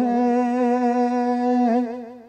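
A man's singing voice holding one long, steady note of a ghazal sung in tarannum, the melodic style of Urdu poetry recitation, into a stage microphone. The note wavers slightly near the end and then fades away.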